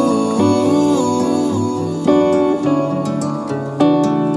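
Background music: a melody of held notes, some sliding between pitches.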